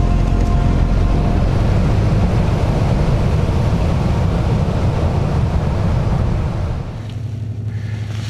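A motorboat under way: a loud, steady low rumble of the engine with rushing water and wind. It eases off about seven seconds in, leaving a quieter hum. Background music runs underneath.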